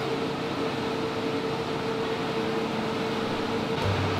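A steady hiss with one constant mid-pitched hum running through it, machine-like and unchanging.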